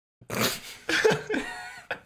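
Men laughing loudly, starting a moment in and running in breathy gusts.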